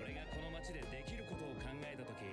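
Background music under a voice speaking Japanese: dialogue from the anime's soundtrack.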